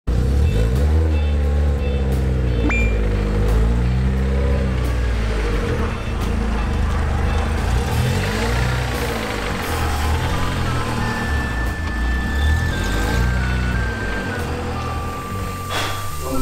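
Subaru Vivio RX-R's supercharged 658 cc four-cylinder engine revved again and again, its pitch rising and falling in repeated blips, under background music.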